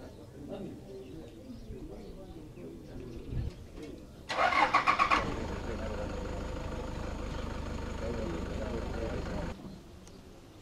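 A vehicle engine cranks with a quick series of loud pulses about four seconds in, catches, and runs steadily until it cuts off suddenly shortly before the end. Faint voices murmur before it starts.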